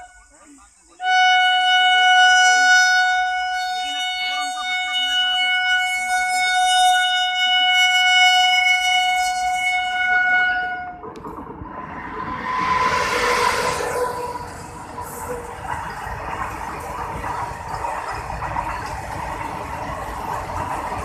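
Electric locomotive horn sounding one long steady blast of about ten seconds as the train approaches. The freight train then passes close by: a loud rush as the locomotive goes past, followed by the steady rumble and clatter of goods wagons rolling by.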